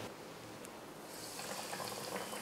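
Breadcrumb-coated chicken frying in hot oil in a kadai: a faint sizzle that starts about a second in and builds slightly.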